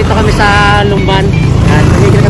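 Motorcycle engine and road rumble while riding, under a song with a repeated sung chant.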